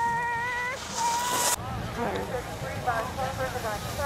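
Spectators shouting and cheering on a ski racer with long, high-pitched yells, then several voices overlapping. A burst of hiss cuts off suddenly about a second and a half in.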